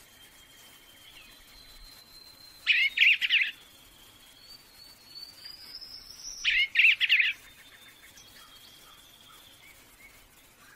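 Songbird singing two loud short bursts of rapid warbling, about three and seven seconds in. A rising whistle leads into the second burst, over faint thin high whistles.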